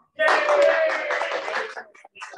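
A small audience clapping, starting a fraction of a second in and dying away near the end, with a voice over the applause.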